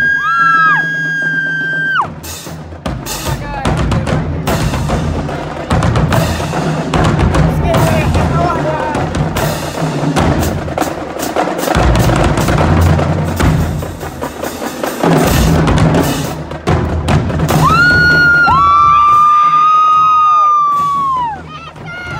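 Marching drumline playing bass drums, snare drums and tenor drums in a dense, driving pattern. Long, high-pitched cries sound over it near the start and again near the end.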